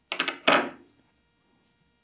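Fibrefill toy stuffing rustling as fingers press it into a small crochet ball: two quick rustles in the first second, the second louder.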